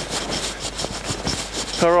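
Rustling and scraping noise from walking with a handheld camera, with no clear tone or rhythm. A man says "Alright" near the end.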